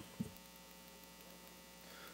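Faint, steady electrical mains hum in the sound system, with a single short sound just after the start.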